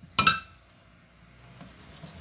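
A single clink of a kitchen utensil against a glass bowl, ringing briefly, just after the start.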